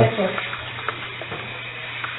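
Steady hiss with a low, even hum underneath: the background noise of a played-back field recording, with a word ending at the start and faint voices in the noise.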